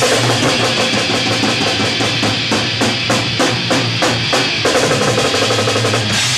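Distorted electric guitar and a drum kit playing a heavy metal riff together, with fast, even drum hits and cymbals.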